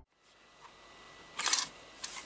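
Faint room tone, then one brief handling noise, a quarter-second rustle or rattle, about one and a half seconds in.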